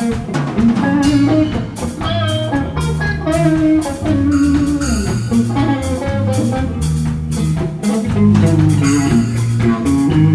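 A funk-rock band playing live: electric guitar, bass guitar and drum kit, with a steady beat of drum and cymbal hits.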